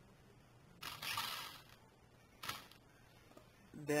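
The small electric drive motor and plastic gearbox of a toy RC car whirring in two short bursts, a longer one about a second in and a brief one about halfway through. The wheels are being spun as the reverse-drive wire is tested.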